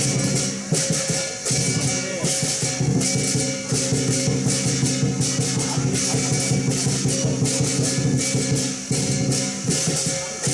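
Chinese lion-dance percussion, a big drum and hand cymbals, beating a fast, steady rhythm with the cymbals ringing on throughout.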